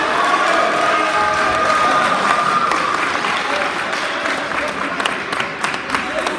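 Spectators clapping and cheering at the end of a wrestling bout, with voices calling out at first and scattered individual claps near the end.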